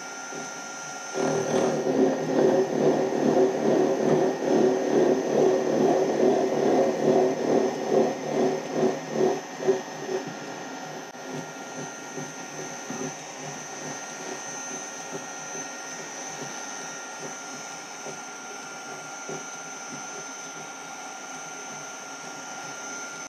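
A rotating gear cutter taking a cut across a metal gear blank, a rough chattering cut that swells and fades about twice a second. About ten seconds in the cutting noise stops, leaving the machine's motor running with a steady whine.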